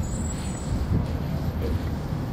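Steady low rumble of city street traffic, with no distinct single vehicle standing out.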